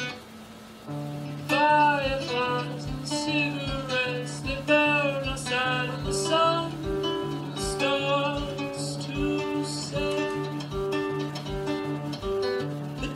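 Music: the intro of a song, with plucked guitar over a steady repeating bass pulse and a gliding melody line above. A brief dip about a second in, then higher repeating notes join about halfway through.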